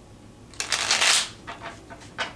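Tarot cards being shuffled by hand: one loud rush of riffling cards from about half a second in, lasting most of a second, then a few shorter, softer card strokes.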